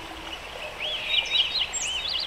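Birds chirping: a run of short, quick rising-and-falling chirps begins about a second in, over a faint steady background hiss.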